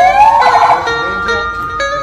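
A vehicle siren wailing, its pitch rising and then holding steady, with a few quick rising whoops near the start. Background music with plucked-string notes plays under it.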